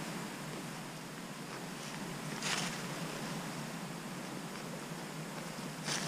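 A single short breath drawn through cupped hands, about two and a half seconds in, over a steady faint background hiss.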